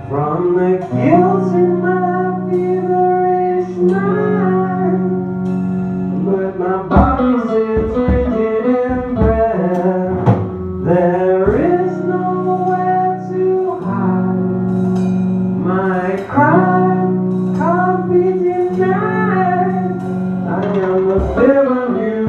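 Live band music: electric guitar, bass guitar and drums playing a song, with a male singer.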